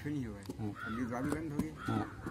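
A man's voice speaking in short phrases, with a short higher-pitched call about a second in and another near the end.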